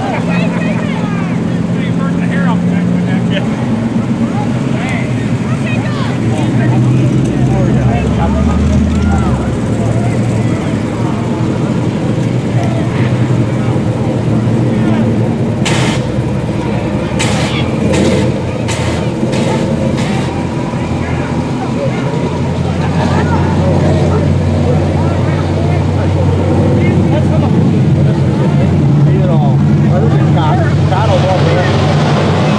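A big truck engine running at low revs, its pitch shifting now and then. About sixteen seconds in, the truck's roof-mounted flamethrowers fire a quick series of about six short blasts over a few seconds.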